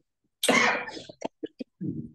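A person coughs once, a loud harsh burst about half a second in, followed by a few short throat-clearing sounds.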